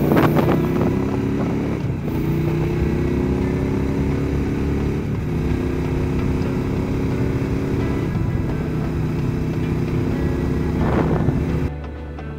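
Motorcycle engine accelerating up through the gears, its pitch climbing in each gear and dropping at an upshift about every three seconds. Wind noise rises near the start and again just before the end.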